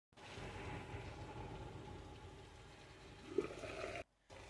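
A pot of water boiling under a glass lid, bubbling steadily, with a faint steady hum underneath. A short, sharper rising sound comes about three and a half seconds in.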